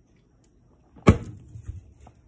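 A single sharp thump about halfway through, then a brief scuffing as it dies away: a drink can being set down on a desk after a swig.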